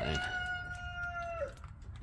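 A rooster crowing once: a single long call that rises, holds a steady pitch for about a second and a half, and drops away near the end.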